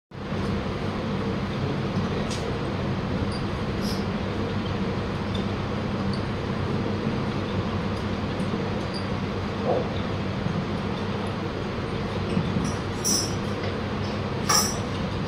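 Steady low hum and hiss of an electric ceiling fan running in a hall, with a few faint clicks and knocks, more of them near the end.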